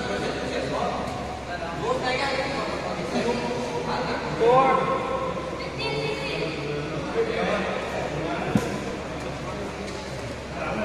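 Voices talking and calling out in a large indoor sports hall, with one rising call about halfway through and a single sharp knock near the end.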